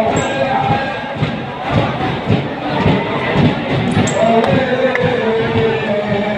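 A crowd of mourners beating their chests in unison (matam), about two slaps a second, under a noha recited over loudspeakers with the crowd chanting along.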